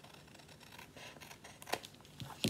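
Scissors cutting through scrapbook paper, trimming a thin strip off the edge: a run of faint, crisp snips, the loudest near the end.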